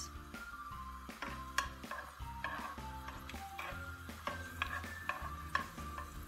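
A metal spoon stirring chopped garlic in hot olive oil in a frying pan, with a light sizzle and occasional clicks of the spoon against the pan, under background music.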